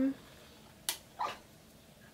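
Electric wax warmer's temperature dial turned on with a single sharp click just under a second in, followed by a softer brief sound.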